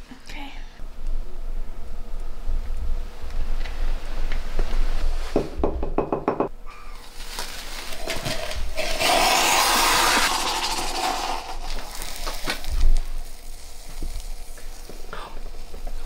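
A lit sparkler fizzing in a crucible of thermite as the mix ignites, with a steady hiss that is loudest for a few seconds in the middle, followed by a single sharp knock.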